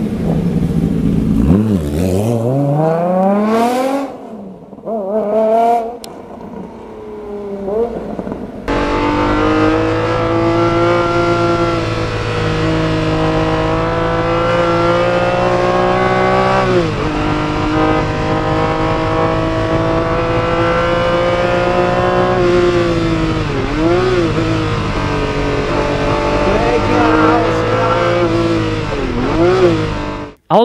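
Ferrari F50's F1-derived 4.7-litre V12 accelerating hard, its pitch rising in several sweeps through the gears. It then runs at a steady high pitch at speed on track, heard from inside the car, with a few brief drops and climbs where the driver lifts or downshifts for corners.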